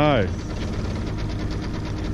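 A boat's outboard motor running steadily at low speed, a constant low hum with a fine, even pulse.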